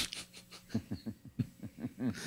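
A person laughing: a sharp breathy burst at the start, then a quick run of short 'ha' pulses, about five a second.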